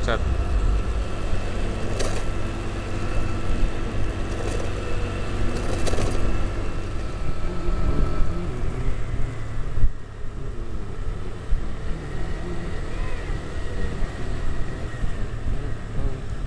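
Honda Vario motor scooter running steadily along the road, its engine hum under road and wind noise, with traffic around. Two brief sharp sounds come about two and six seconds in, and the sound drops briefly about ten seconds in.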